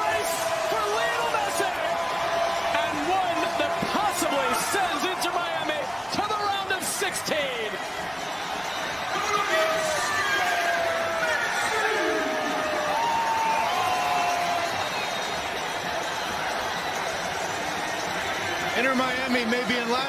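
Stadium crowd cheering and shouting after a goal: a steady roar of many overlapping voices, with scattered individual shouts and whistles rising above it.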